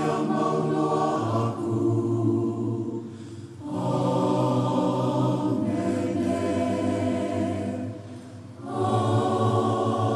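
Church choir singing a hymn in long, held phrases, breaking briefly about three and a half and eight and a half seconds in.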